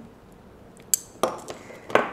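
Network cable connectors and a plastic PoE extender handled by hand: a short bright clink about a second in, then a couple of sharp clicks.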